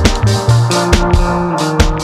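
Brass marching band playing, with saxophones and trumpets over deep bass notes and a steady drumbeat.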